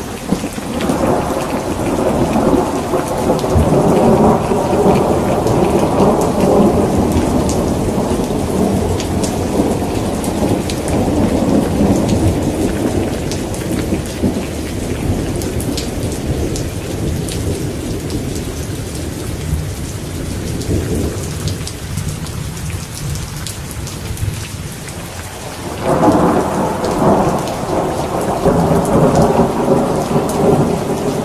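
Steady rain with rolling thunder: a long rumble swells about a second in, rolls on and slowly dies away, then a second peal breaks suddenly near the end.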